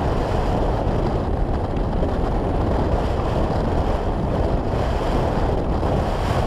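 Wind rushing over the microphone of a camera mounted on a hang glider in flight: a steady, low rush of airflow with no tones in it.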